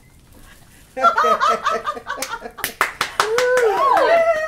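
About a second of quiet, then women laughing loudly in short repeated bursts, with a few sharp hand claps and a high, sliding squeal near the end.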